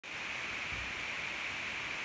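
Steady, even hiss like static, with no rhythm or pitch, ending abruptly.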